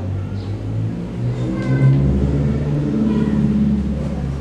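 A motor vehicle engine running, with a steady low rumble and its pitch rising in the second half as it revs.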